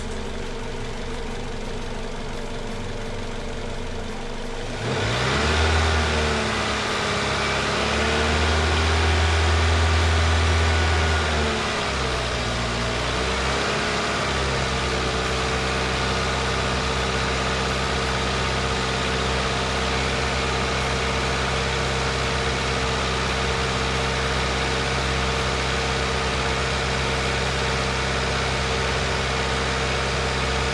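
Car engine idling, then revved about five seconds in and held at raised revs, roughly 2000 rpm, for several seconds, with the pitch wavering, before dropping back to a steady idle. The engine is being held at speed to check that the alternator does not overcharge the battery.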